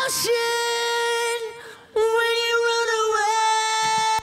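Soloed male rock lead vocal singing two long held high notes, the first fading a little before halfway and the second starting just after, run through an eighth-note mono delay that gives it an echo.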